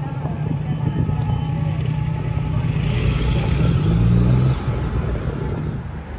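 City street traffic, with a motor vehicle's engine running close by, its pitch climbing as it gets louder and then dropping away abruptly about four and a half seconds in.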